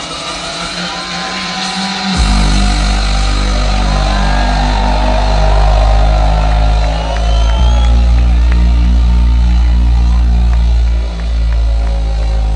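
Drum and bass DJ set played loud over a festival sound system, with the crowd cheering. About two seconds in, a heavy bass line drops in and the music gets louder.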